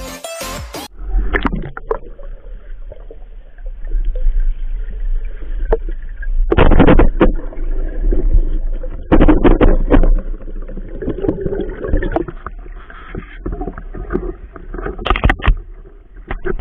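Muffled underwater noise picked up by a diver's camera in a river: a steady low rumble with irregular louder swishes and knocks of water movement. The loudest bursts come about seven seconds in and again about nine to ten seconds in.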